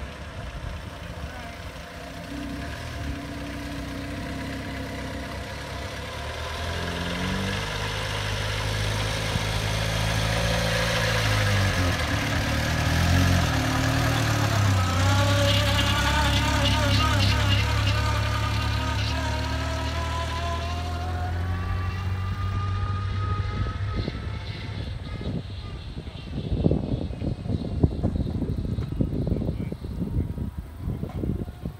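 A motor vehicle's engine running, its hum growing louder toward the middle and then fading. Wind buffets the microphone near the end.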